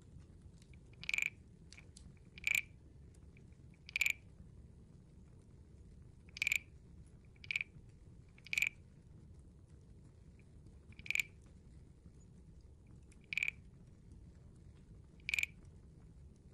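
Large wooden frog guiro: its stick is scraped along the ridged back, giving nine short croaks spaced unevenly, one to two and a half seconds apart.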